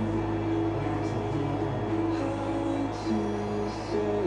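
Music playing on a car radio, held guitar-like notes over a steady low drone from the vehicle.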